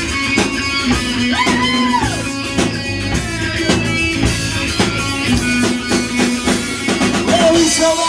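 Live rock band playing: electric guitar over bass and a driving drum kit, with a sung line coming in near the end.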